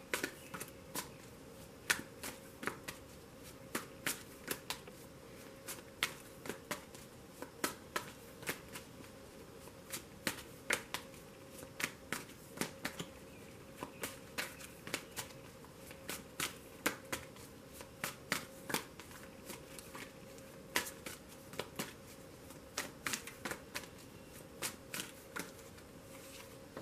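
A deck of tarot cards being shuffled by hand, overhand style, with packets of cards slapping and riffling in sharp, irregular clicks, a few a second.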